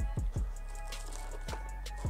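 Background music: low drum hits under held tones.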